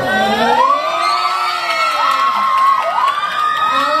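A crowd of fans, mostly high voices, screaming and cheering together in long overlapping shrieks that slide up and down in pitch.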